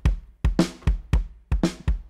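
Dry-sounding sampled acoustic drum kit played from a MIDI keyboard, being recorded as a loop: a simple beat of a low kick-like hit followed closely by a brighter drum hit, the pair coming about once a second.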